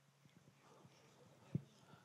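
Near silence with a faint steady hum, broken by a single brief thump about one and a half seconds in.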